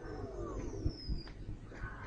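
Cartoon firework sound effects: a high whistle falling slowly in pitch over about a second, over scattered low pops. A group of voices oohs at the start.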